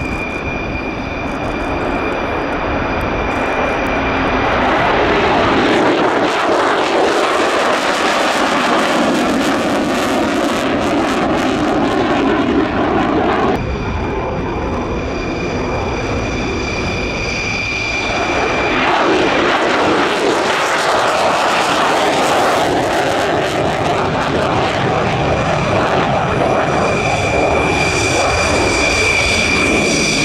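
Lockheed Martin F-35A's single Pratt & Whitney F135 turbofan at takeoff power: a loud, continuous jet roar with a high steady whine as the jet lifts off and climbs away. The sound changes suddenly about 13 seconds in and again about 18 seconds in.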